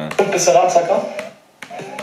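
Speech only: a man talking, then a quieter voice near the end.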